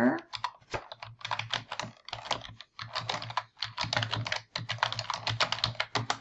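Typing on a computer keyboard: a brisk, uneven run of keystrokes with a few short pauses, entering a web address into the browser's address bar.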